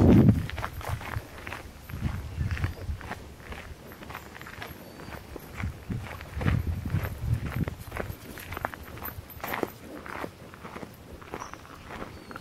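Footsteps crunching on a gravel path at a walking pace, about two steps a second, with a brief loud rumble of wind or handling on the microphone right at the start.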